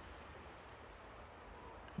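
Faint outdoor background: a low rumble and a soft, even hiss, with no distinct event.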